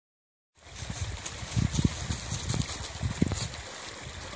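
Small creek running steadily after rain, a continuous watery rush with irregular low rumbles through it; the sound starts about half a second in.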